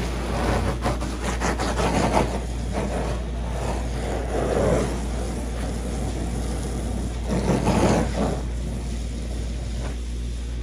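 Water jet from a hose nozzle spraying onto an inflatable vinyl pool, a hissing splatter that swells louder as the stream sweeps across it, about three times, over a steady low rumble.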